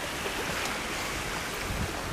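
Steady outdoor wind noise, with low rumbles of wind buffeting the microphone near the end.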